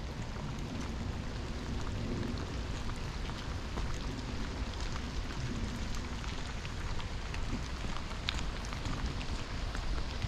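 Steady rain falling, with scattered sharp drop ticks and a low rumble of wind on the microphone.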